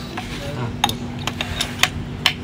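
A few sharp metallic clicks as an SDS Plus bit is pushed and twisted into the spring-loaded chuck of an APR AP35 rotary hammer drill, with the chuck collar pulled back to seat it.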